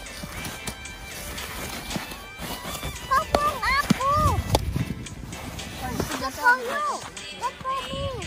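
Young children's high-pitched voices, wordless calls and exclamations rising and falling in pitch, over background music. A low rumble about four seconds in.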